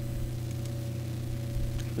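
Steady electrical hum and hiss from a desktop recording microphone, with two faint clicks, one about two-thirds of a second in and one near the end.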